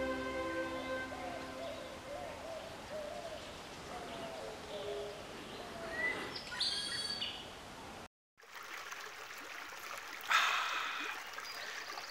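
Faint outdoor ambience of birds calling: low wavering calls in the first few seconds, then a short chirp and brief high calls about six to seven seconds in, over a soft steady hiss. The sound drops out abruptly just past the middle.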